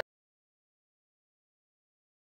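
Silence: the speech stops right at the start and nothing is heard after it.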